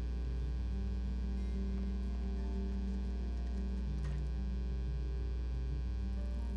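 Steady electrical mains hum with a buzz of overtones on the soundtrack, typical of a ground loop in the recording chain, with a couple of faint ticks.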